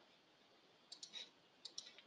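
Near silence: room tone, with a few faint clicks about a second in and again near the end.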